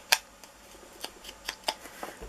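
Sponge dauber dabbed and brushed against the edge of a punched cardstock snowflake: a series of light, irregular taps and clicks, with a louder one at the very start and another about a second and a half in.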